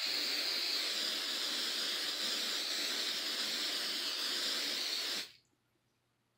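Aqua Net aerosol hairspray can spraying in one continuous hiss of about five seconds, which stops abruptly.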